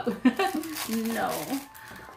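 Talk and laughter over the crinkling of a small plastic bag of Lego pieces being handled at an advent calendar door.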